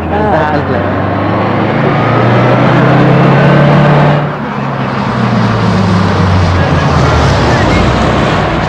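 A bus engine running as the bus drives toward the camera. The low drone grows louder over the first few seconds, dips briefly about four seconds in, then goes on steadily.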